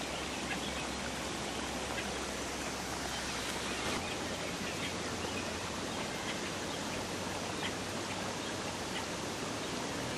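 A steady rushing hiss like running water, with faint scattered ticks.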